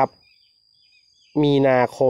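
A man speaking Thai, reading out a date. About a second of pause near the start holds only a faint, thin, steady high-pitched tone.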